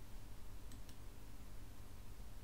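Two quick, faint computer mouse clicks a little under a second in, over a steady low hum.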